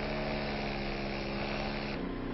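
Walk-behind concrete saw running with a steady, even engine hum.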